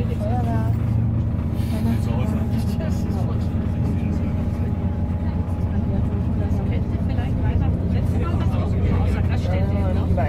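Steady low rumble of a passenger train running along the track, heard from inside the carriage, with faint voices in the background.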